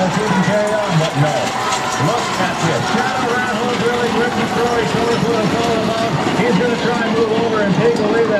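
A male announcer talking continuously as he calls a chuckwagon race, over a steady background noise.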